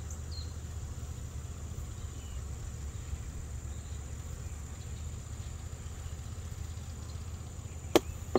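Steady outdoor background: a continuous high insect trill over a low rumble, with a single sharp knock near the end.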